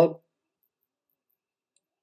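The tail of a man's spoken word at the very start, then near silence, with at most one tiny faint tick near the end.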